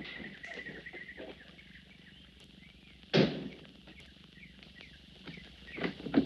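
A car door of a wood-bodied station wagon slams shut once, a little after three seconds in, over faint birds chirping at the start. Near the end a door handle clicks as the door is worked again.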